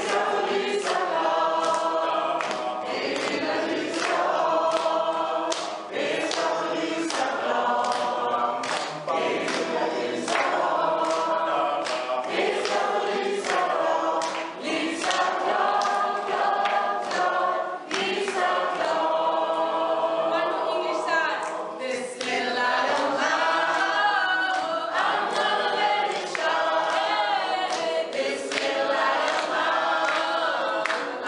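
A small mixed group of men and women singing together unaccompanied in harmony, with hand claps keeping a steady beat.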